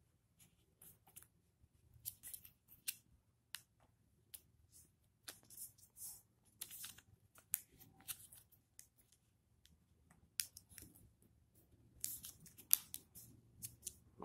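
Origami paper being folded by hand: faint, irregular crinkles and rustles as the corners are brought over and the creases pressed flat.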